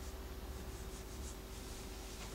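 Whiteboard eraser rubbing across a dry-erase board in a few short, faint strokes over a low steady room hum.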